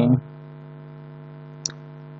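Steady electrical hum, a low buzz with many even overtones, underlying the voice recording, with a single brief click about one and a half seconds in.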